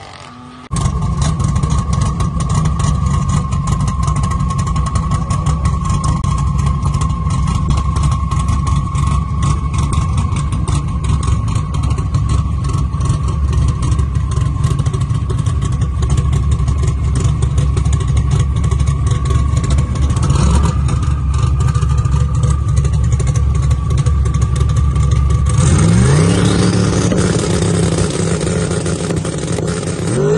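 Modified sixth-generation Camaro drag car's engine idling loudly and choppily, with a steady high whine over it. Near the end the engine revs, rising in pitch several times.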